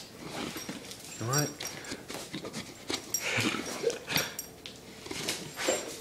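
A dog's noises, short whimpers and panting, among scattered clicks and rustles, with a brief voiced sound about a second in.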